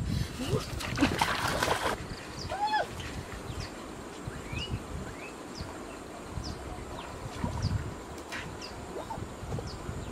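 Splashing and rustling from wading in a shallow stream, loudest for about a second near the start, with a short rising-and-falling call a few seconds in and small bird chirps throughout.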